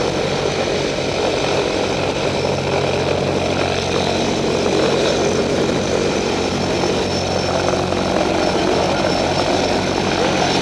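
A skydiving jump plane's propeller engines running steadily, a continuous loud drone with no change in pitch.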